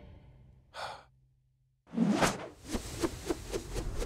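A deep calming breath: a short inhale about a second in, a brief silence, then a long sighing exhale about two seconds in. A run of quick, evenly spaced soft pulses follows, about four a second.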